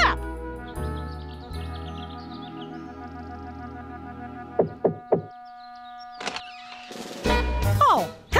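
Light cartoon underscore music with three quick knocks on a wooden front door about halfway through.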